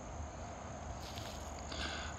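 Faint outdoor ambience: a low, even hiss with a thin, steady high-pitched tone over it.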